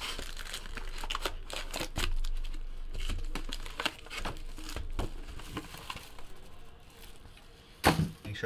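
Foil trading-card packs crinkling and rustling as they are pulled out of a cardboard hobby box and dropped onto a table, with scattered sharp clicks and taps that thin out near the end.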